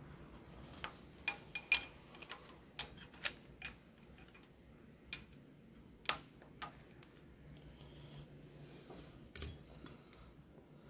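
Light metallic clicks and taps, about a dozen at irregular spacing, from hand tools working on the rocker arms and adjusting screws of a Cat 3126B/C7 diesel's valve train during a valve lash adjustment.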